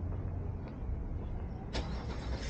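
Outdoor street ambience: a steady low rumble, with a faint tick early and a sharp click near the end.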